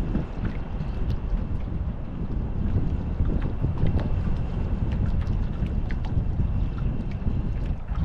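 Wind buffeting the microphone of a GoPro mounted on a fishing rod, a steady low rumble throughout. Under it are faint scattered ticks and a faint steady whine from the spinning reel as the lure is cranked in.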